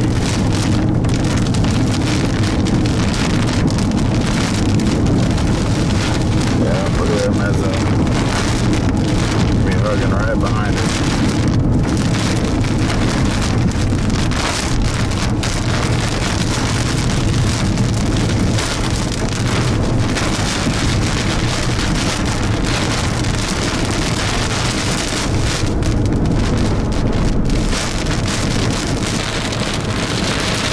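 Rain beating on a moving car's roof and windshield in a steady hiss, over the low drone of the car running on a wet road.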